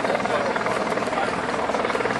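A steady mechanical drone with a fast, even pulse, from an engine or rotor running.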